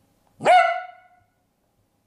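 A small long-haired dachshund gives one loud bark that rises sharply in pitch and is then held briefly.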